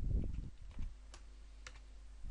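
Computer keyboard being typed on: a cluster of dull keystrokes at the start, then a few separate sharp clicks.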